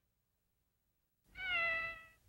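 About a second of silence, then a kitten meows once, slightly falling in pitch and lasting under a second. It is the meow of the MTM Enterprises production-company logo.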